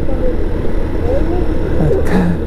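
Italika V200 motorcycle under way on a downhill mountain road: a steady low rumble of engine and riding noise.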